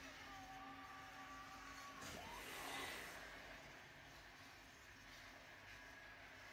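Near silence: faint room tone with a very quiet low hum.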